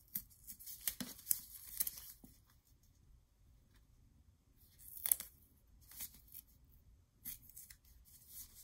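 Double-sided craft tape being pressed along a cardstock cover's edge and its paper backing liner peeled off by hand: crackling, tearing rustles in a cluster over the first two seconds, again about five seconds in, and a few short clicks between.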